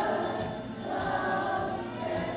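Children's choir singing: a short sung phrase at the start, then a longer held phrase.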